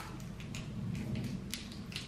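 A small chocolate's wrapper being picked open by hand: faint rustling with a few soft crackles, the clearest about one and a half seconds in, over a low steady room hum.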